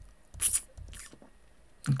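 A few short clicks from a computer keyboard as a chart replay is stepped forward, the loudest about half a second in and a fainter one about a second in.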